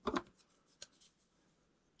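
Small clicks and rustle of fly-tying tools and thread being handled at the vise: a short burst at the start, then a single sharp click just under a second in.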